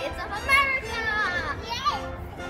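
Young children's voices calling out as they play.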